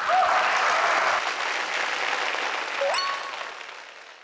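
Applause, slowly fading toward the end, with two brief rising tones heard over it, one near the start and one about three seconds in.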